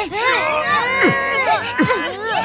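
Several voices crying out and wailing at once, long overlapping cries that slide up and down in pitch.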